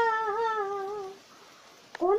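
A woman's unaccompanied voice holding one long sung note that wavers slightly and fades away about a second in, followed by a brief pause with a faint click just before the next phrase.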